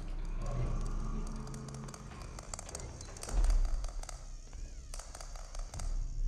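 A small chrome ball rolling across a hard, glossy floor, giving a quick run of light clicks over a steady low hum. A deep, heavy thud about three and a half seconds in is the loudest sound.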